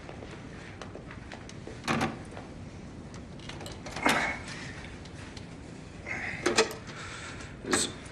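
A handful of short knocks or clunks, about five, spaced a second or two apart over a steady low background hiss.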